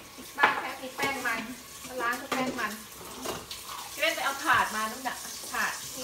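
Hands scrubbing a raw duck with tapioca starch in a metal bowl in a kitchen sink: wet rubbing and splashing, with a few knocks against the bowl.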